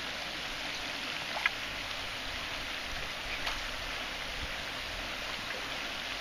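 River water running steadily, an even rushing hiss, with a couple of faint ticks.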